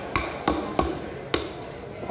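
Large knife chopping through grouper flesh onto a chopping block: four sharp chops at irregular spacing.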